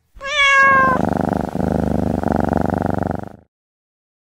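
A cat meows once, the call falling in pitch, then purrs steadily for about two and a half seconds before the sound cuts off suddenly.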